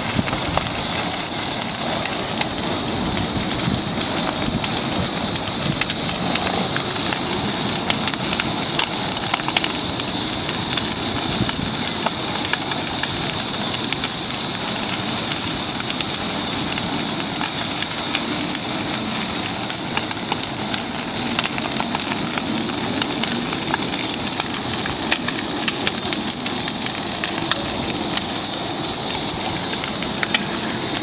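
A large bonfire of wooden furniture and scrap burning: a steady hiss of flame with frequent sharp crackles and pops throughout.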